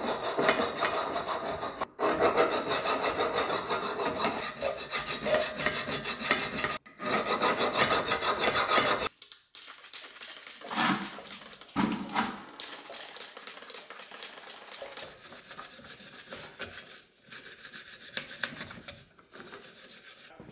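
Hand file rasping in quick repeated strokes over the rusty steel edges of a driveshaft slip yoke for about the first nine seconds. After that it goes quieter, with two short trigger sprays of cleaner into the yoke and light scraping.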